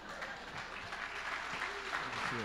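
Audience applauding, the clapping growing a little louder.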